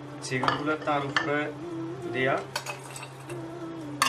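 A stainless steel mixing bowl clinking and scraping as ingredients are tipped into it from other bowls, with bowl rims knocking together. The steel rings with a wavering tone in the first second or so and again a little after the midpoint.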